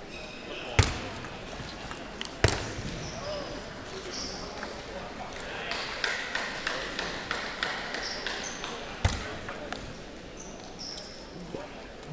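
Table tennis ball knocks: a couple of single clicks, then a quick rally of ball-on-bat and ball-on-table clicks, ending in one sharp knock. Short high sneaker squeaks come from the players' footwork on the court floor.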